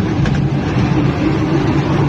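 Steady engine hum and road noise of a moving road vehicle, heard from on board.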